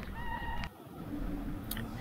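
A high, drawn-out animal call that cuts off suddenly about two-thirds of a second in, followed by a faint steady low hum.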